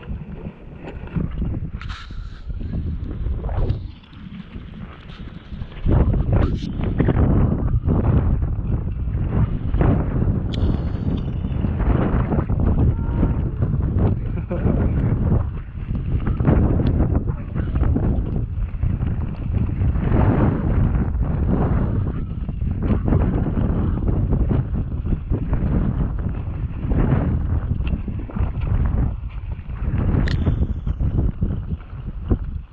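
Wind buffeting the microphone in gusts, a loud low rumble that drops off for a couple of seconds about four seconds in, then surges back heavily and unevenly.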